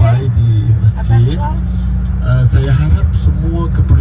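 A man talking into a microphone over the bus's sound system, with the steady low rumble of the bus's engine and road noise in the cabin underneath.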